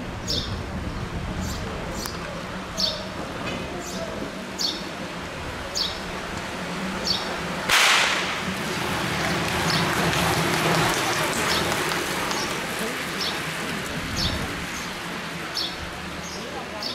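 A pack of track bicycles rushes past close by about eight seconds in: a sudden whoosh of tyres and wind that fades over a few seconds. A short, high chirp repeats about once a second throughout over a low background murmur.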